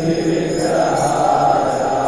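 Devotional kirtan: a mantra chanted and sung in long held notes, as music.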